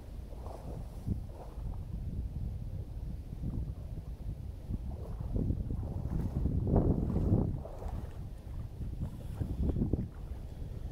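Wind buffeting the microphone: a steady low rumble that gusts louder from about five to seven and a half seconds in.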